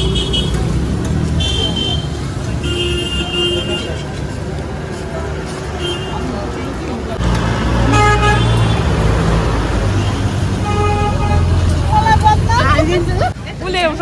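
Street traffic with vehicle horns tooting several times at different pitches over a steady engine rumble. The rumble grows louder about halfway through, as a vehicle runs close by.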